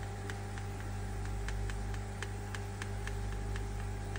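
Steady low hum of a running pump, with light, irregular ticks about three times a second.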